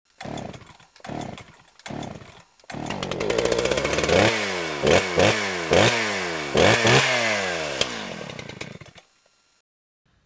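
A small engine sputters three times as it is pull-started, then catches and runs. It is revved in several sharp blips, the pitch falling back after each, before it fades out.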